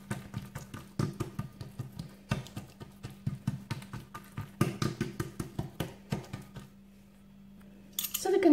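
Hands pressing and patting soft, oiled and buttered dough flat against an oiled work surface, making quick irregular sticky slaps and clicks that stop about seven seconds in. A low steady hum runs underneath.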